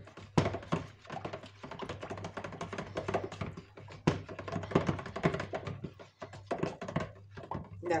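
Silicone spatula stirring thin soap batter in a plastic bucket, with irregular scrapes and knocks against the bucket's sides.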